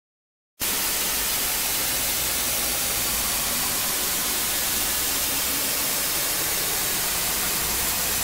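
Steady white-noise hiss like TV static, an edited-in sound effect, cutting in abruptly from dead silence about half a second in and holding one level throughout.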